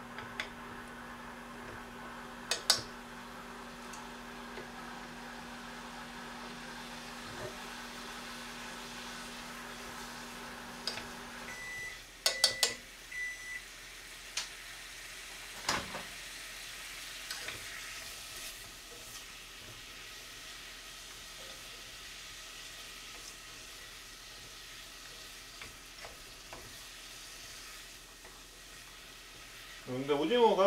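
Cubed radish and squid sizzling gently in sesame oil in a stainless pot, with occasional chopstick clicks and knocks against the pot. An appliance's steady hum cuts off about twelve seconds in, followed by three short electronic beeps.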